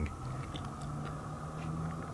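Quiet room tone in a pause: a faint steady low hum with a few faint ticks.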